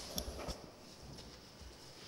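A couple of light knocks in the first half-second, then faint handling noise in a large room as people rise from a hearing table and gather papers.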